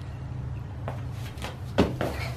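A child's hands and feet striking a rubber gym floor during a cartwheel: a few soft thuds, the loudest near the end, over a steady low hum.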